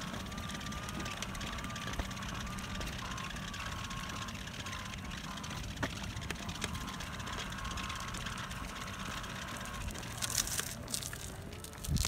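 Electric wheelchair's motors whining steadily as it rolls along an asphalt path, over a low rumble of tyres and outdoor noise. The whine fades out about ten seconds in, followed by a few brief rustles.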